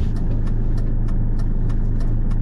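Fiat Ducato camper van's diesel engine idling at a standstill, a steady low hum heard from inside the cab, with a faint regular tick about three times a second.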